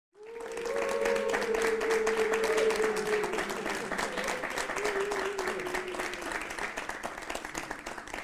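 Studio audience applauding, with voices cheering over the clapping in the first few seconds; the applause thins out near the end.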